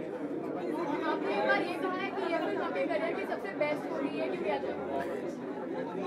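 Softer, more distant speech with the chatter of other voices in a room, quieter than the close-miked voice on either side. It fits a question being put from off the microphone during an interview.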